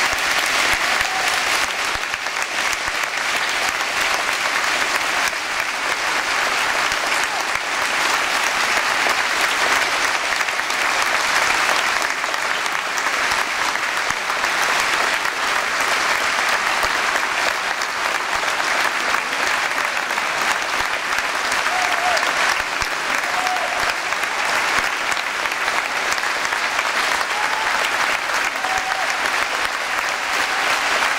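Audience applauding steadily, a dense even clatter of many hands clapping.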